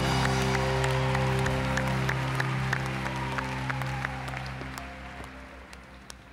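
Live band's final held chord ringing out and fading away under audience applause, the sound dying down over the last couple of seconds.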